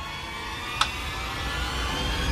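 A steady rush of noise with a low rumble, slowly growing louder, with one sharp click a little under a second in.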